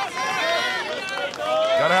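Men's voices throughout, shouting or talking over a crowd; no other sound stands out.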